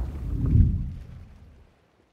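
Logo-intro sound effect: a low, noisy swell with a deep boom about half a second in, dying away over the next second.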